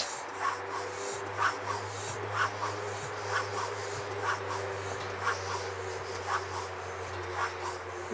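A hand-worked track pump being stroked about once a second, charging a model airplane's compressed-air bottle through a check valve as the pressure builds toward 70 psi.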